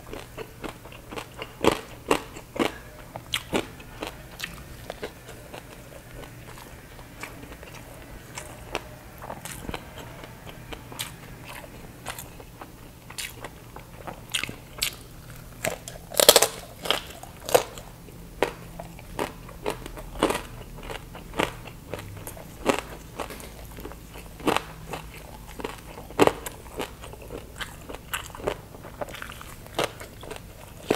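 Biting and chewing crispy baked pork belly crackling, a run of sharp crunches all through, the loudest bite about sixteen seconds in.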